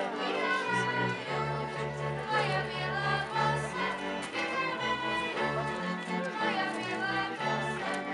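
A group of children singing a folk song together, accompanied by a folk string band of violins and a double bass, its low notes changing every half second or so.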